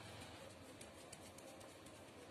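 Near silence with faint soft dabs and rubs of a wet sponge pressing transfer paper onto a glass bottle.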